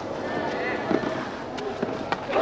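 Tennis ball being struck with rackets during a clay-court rally: a couple of sharp hits, one about a second in and one near the end, over a low crowd murmur.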